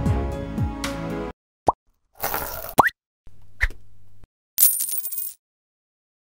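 Background music that stops about a second in, followed by a logo-reveal sound-effect sequence: several short rising pops, a brief swish, a low hum and a high shimmer.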